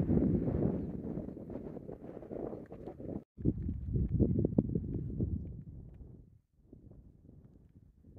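Wind buffeting the microphone: an uneven low rumble in gusts, cut off abruptly twice, and much fainter in the last couple of seconds.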